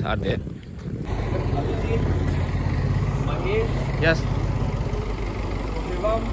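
Minibus engine idling close by: a steady low rumble that starts about a second in, with a few short voices over it.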